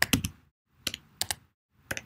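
Computer keyboard keystrokes while typing code: a quick run of clicks at the start, then a few single keystrokes about a second in and near the end.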